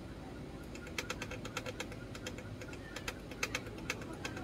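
Irregular run of small, sharp clicks and ticks as a soldering iron tip works against the component pins of an instrument cluster circuit board. The clicks start about a second in and come thickest near the end.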